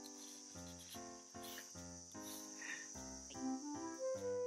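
Faint background music of short, evenly paced chords, over a continuous high chirring like crickets or other insects.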